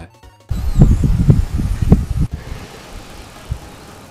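Gallium crackling as it melts under a magnifying glass, the 'tin cry' its crystal structure gives off as it rapidly changes. It comes as a dense crackling burst about half a second in, lasting nearly two seconds, then dies to a faint hiss.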